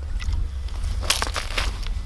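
Short crunches and scrapes of snow and ice at an ice-fishing hole as a tip-up is lifted out, the clearest cluster about a second in, over a steady low wind rumble on the microphone.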